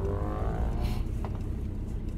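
Vehicle engine rising in pitch as it accelerates over a steady low rumble, heard from inside a van's cabin, with a short hiss about a second in.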